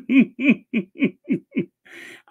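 A person's laugh: a run of about seven short 'ha' bursts, about four a second, each dropping in pitch and trailing off near the end, the laugh the laugher calls a wicked, sinister laugh.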